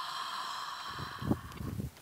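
A woman's long, drawn-out inhale through an open mouth with the back of the throat narrowed, a steady soft hiss like gasping for air but not hard. This is the open-mouth practice stage of ujjayi breathing.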